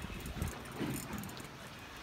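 Wind rumbling on the microphone over open water, heaviest in the first half-second, with a few faint high clicks and rattles.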